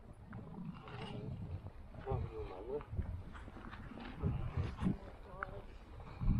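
Wind rumbling and buffeting on the microphone in irregular gusts, with faint voices of people talking about two seconds in and again near the end.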